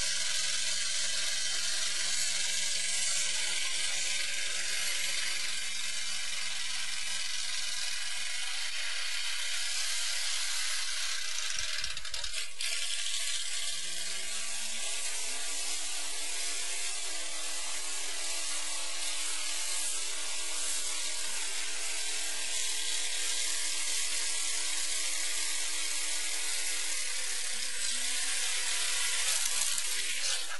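A 1977 Mercury Cougar's V8 held at high revs during a burnout, with a steady loud hiss of spinning rear tire on pavement. The car has an open rear differential with no Posi. The revs hold, then after a break about 12 s in they climb about 14 s in and hold high again.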